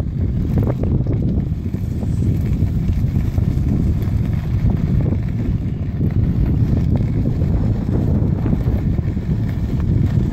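Steady low rumble of wind buffeting the microphone on a moving electric unicycle, mixed with the tyre rolling over a gravel path.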